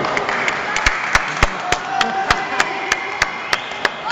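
A run of about a dozen sharp, evenly spaced knocks, roughly three a second, starting about a second in, over the steady noise of a crowd.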